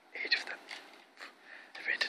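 A person whispering in short, breathy phrases.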